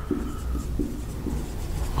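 Marker pen writing figures on a whiteboard: a few short strokes over a low steady room hum.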